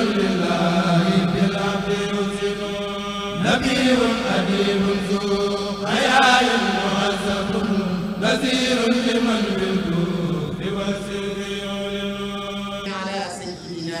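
Chanting of an Arabic devotional poem praising the Prophet, sung in long drawn-out phrases. Each phrase sinks in pitch, and a short break follows every two to three seconds.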